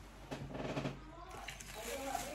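Faint voices of people talking in the room, with the soft, wet sounds of someone eating soup from a spoon about half a second in.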